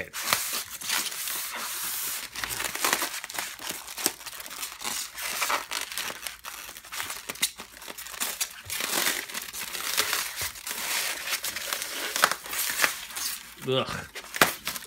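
Packing tape being peeled and torn from a styrofoam (expanded polystyrene) packing block, with the foam rubbing and crunching under the hands. It makes a continuous run of scratchy crinkling, dense with small crackles.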